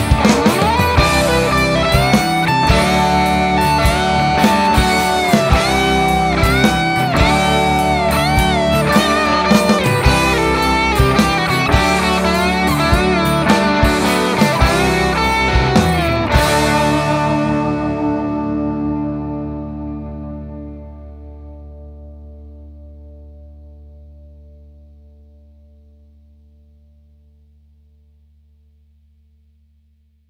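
Instrumental ending of a rock song: electric guitar with distortion playing lead lines with bending notes over a steady beat. About halfway through the band stops on a final chord that rings on and slowly fades away.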